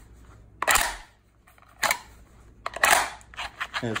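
Pistol being pushed into a rigid Kydex double-retention holster: a series of sharp plastic clicks and snaps, one about a second in, another near two seconds, and a quick cluster around three seconds as the gun seats and the retention locks.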